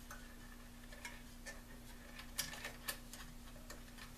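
Faint, irregular small clicks and ticks of wires and plastic connector parts being handled inside an open radio transceiver chassis, a few sharper ticks a few seconds apart, over a steady low hum.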